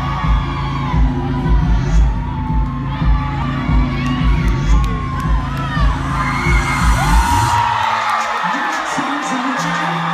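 Concert crowd screaming and cheering over pulsing, bass-heavy music. The bass beat drops out about three-quarters of the way through, leaving the screams, and a low held synth note comes in near the end.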